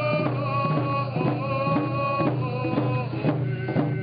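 Coast Salish hand drums struck in a steady beat, about three beats a second, with a group of voices singing long held notes.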